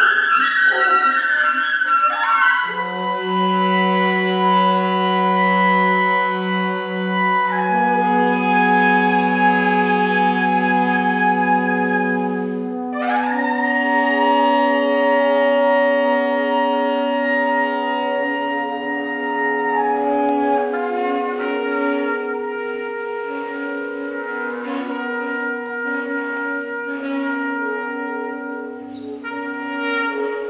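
Music: a brass and wind ensemble playing long held chords that change every few seconds. After about twenty seconds shorter, choppier notes come in over the held tones.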